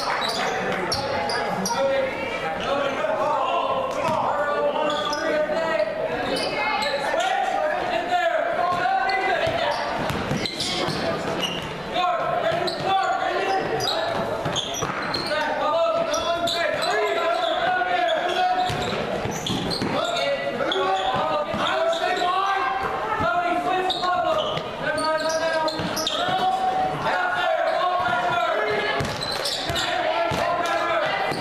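A basketball dribbling and bouncing on a hardwood gym floor, with continuous crowd voices and shouting echoing around a large gym.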